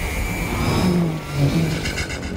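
Film sound effects of an engine-like mechanical whir, with a steady high whine in the first half and pitches sliding up and down about a second in.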